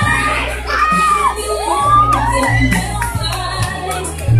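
Music with a steady bass line playing, with a crowd of children shouting and cheering over it.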